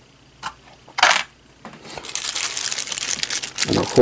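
Small clear plastic parts bag crinkling as it is picked up and handled: a couple of brief rustles, then a steady crackly crinkle for about two seconds.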